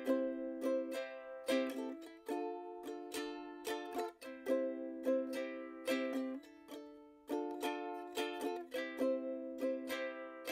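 Background music: a solo ukulele strumming chords at an easy, steady pace.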